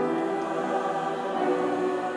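Church congregation singing sustained chords together, as music after the blessing.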